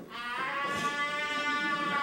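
A single voice holding one long, steady high note. It slides up briefly as it begins and stops just before the end.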